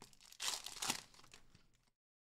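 Trading cards rustling and sliding against one another as they are handled, in two short bursts about half a second and one second in, with fainter scuffs after.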